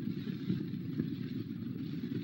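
Steady low rumbling noise, even throughout, with no clear tone or rhythm.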